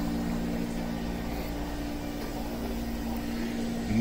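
A steady low mechanical hum with a few held low tones, the sound of the shop's running machinery such as its air handling.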